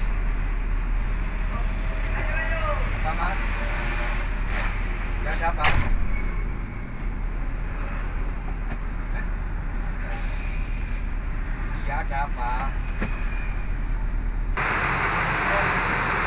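Steady low engine drone and road noise of a Mercedes-Benz coach bus heard from inside the passenger cabin as it drives, with a brief knock about six seconds in. Near the end the drone gives way to a broader, hissier background ambience.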